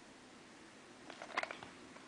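Near silence of room tone, with a few faint soft clicks and rustles of hands handling things about a second in.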